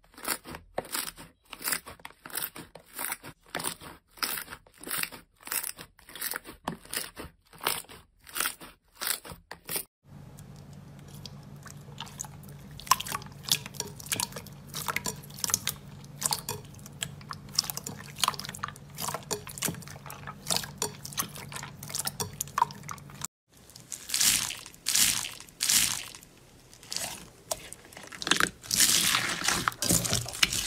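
Hands squishing and pressing slime. First comes a run of crisp crackling squishes, about two a second, from thick purple slime pressed in a plastic tub. About ten seconds in, it changes to many small wet clicks and pops as glossy slime is kneaded over a faint low hum. About two-thirds of the way through come louder crunchy squishes from red clear slime full of foam beads.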